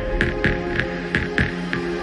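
Windows error sounds from the MEMZ trojan, struck over and over about three times a second on top of a steady droning hum. This is the trojan's payload on an infected Windows XP machine as it floods the screen with error icons.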